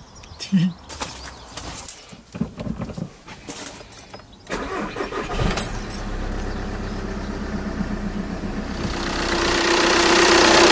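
A few clicks and knocks, then the diesel engine of a 2009 Audi A3 8P cranks and starts about five seconds in, settling into a steady idle. It is the first start after an oil change, run to circulate the fresh oil before the level is rechecked. The idle grows louder near the end.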